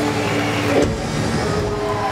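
Live band's closing held notes dying away through the PA, with a deep low rumble swelling about a second in after a short downward slide.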